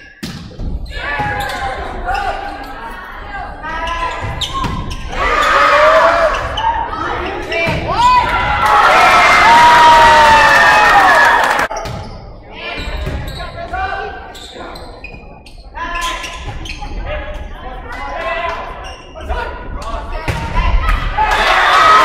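A volleyball being struck again and again during rallies in a gymnasium: sharp slaps of hands on the ball, echoing in the hall. Players and spectators shout, with a few seconds of loud overlapping yelling and cheering around the middle.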